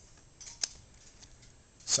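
A short rustle and one sharp click about half a second in, over quiet room tone, like small objects being handled.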